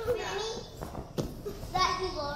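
Small children's voices at play, with two short thumps about a second in, a little under half a second apart, from children climbing and jumping on soft foam plyo boxes.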